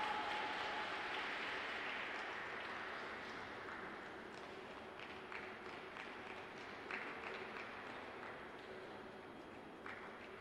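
Audience applause in an ice rink, dying away gradually after a skating performance, with a few sharp single clicks in the second half.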